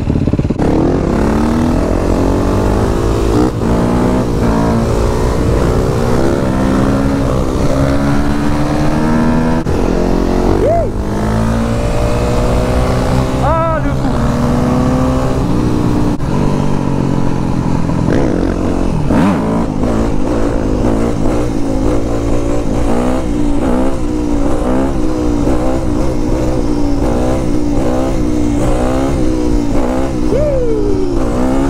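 Yamaha YZ250F dirt bike's 250 cc four-stroke single-cylinder engine, heard from the rider's seat with wind on the microphone, accelerating and shifting up through the gears, its pitch climbing and falling back with each shift. In the second half the revs rise and fall in quicker swings.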